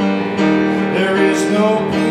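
A man singing a hymn while accompanying himself on a digital piano.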